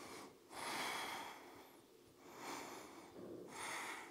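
A woman breathing audibly while holding yoga boat pose, with about three long breaths and quiet gaps between them.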